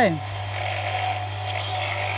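Compact electric high-pressure washer running with a steady low hum, its pump drawing water straight up a suction hose from standing water. A high hiss joins about one and a half seconds in.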